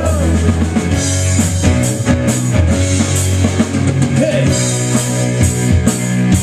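Live rock band playing amplified electric guitars and bass over a drum kit beat.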